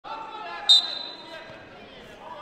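A referee's whistle gives one short, sharp, shrill blast about two-thirds of a second in, its tone ringing on briefly in the hall, over voices in the arena.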